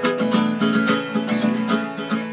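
Acoustic guitar being picked in a quick, even run of single notes, about five a second, each ringing into the next: a warm-up picking pattern.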